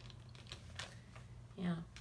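A few faint, separate clicks and taps in a quiet room with a low steady hum, then a woman says a short "yeah" near the end.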